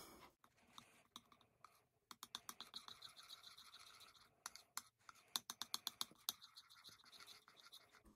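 Table knife mixing frosting on a ceramic plate, heard faintly as runs of quick clicks and scrapes, first about two seconds in and again past the halfway mark.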